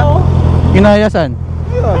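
Motorcycle engine idling steadily, with short bursts of people talking over it.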